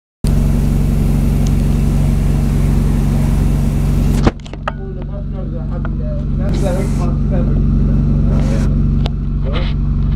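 A bus engine idling with a steady low hum. A loud hiss over it cuts off suddenly with a click about four seconds in, after which faint voices are heard under the hum.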